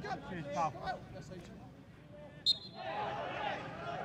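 Faint voices of footballers shouting and calling across the pitch, with a single short sharp click about two and a half seconds in.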